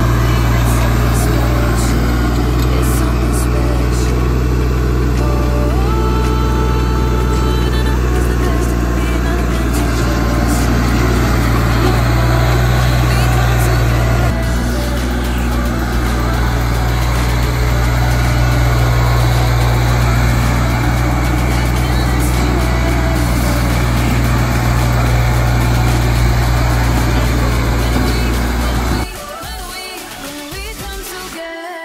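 Branson 3520H compact tractor's diesel engine running steadily while it drives over loose dirt, its loader bucket dragging the ground. The sound shifts slightly about halfway through.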